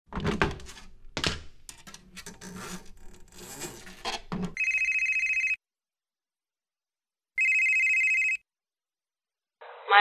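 Telephone ringing twice, each ring a steady high tone about a second long and about two seconds apart. Before it comes a run of irregular clicks and knocks. Just before the end a voice starts, thin and narrow-band as if heard over a phone line.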